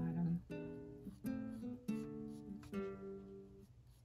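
Background acoustic guitar music: a few plucked chords, each struck and left ringing, fading out near the end.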